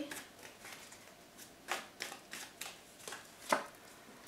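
Tarot cards being handled: shuffled and drawn by hand, heard as a faint string of short, irregular card flicks and slaps, the sharpest about three and a half seconds in.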